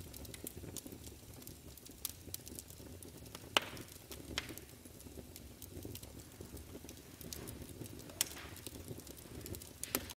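Fireplace fire crackling: a faint steady low rumble with scattered sharp pops, the loudest about three and a half seconds in and another near the eighth second.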